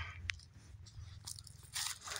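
Faint crunching and rustling of footsteps in dry grass and brush, with scattered small clicks and a short hiss near the end.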